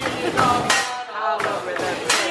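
A man's voice calling out in a drawn-out, sing-song way, with a sharp clack at the very start and another sharp onset about one and a half seconds in.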